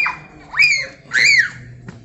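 Playful, high-pitched shrieks during a backyard pumpkin-guts fight: a first cry trailing off right at the start, then two more, each rising and falling in pitch, about half a second and a second and a quarter in. A brief sharp click near the end.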